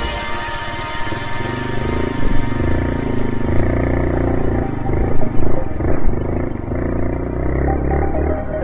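Honda CT125 Hunter Cub's air-cooled single-cylinder four-stroke engine and exhaust running at low speed on a rough dirt track, the throttle rising and falling unevenly with a few louder surges. Background electronic music fades out over the first two to three seconds.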